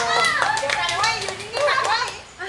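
Several people talking and calling out over one another in lively, high voices around a birthday cake, with a few scattered hand claps.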